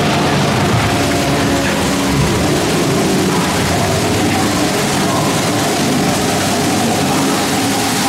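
Steady rushing of flowing and falling water along a boat-ride channel, with a few faint held tones of ambient ride music underneath.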